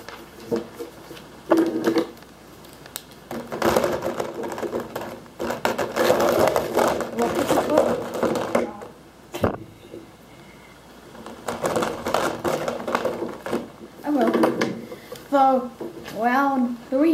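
Handling noise at a table: paper rustling and markers being picked through, in two long stretches, with voices mixed in.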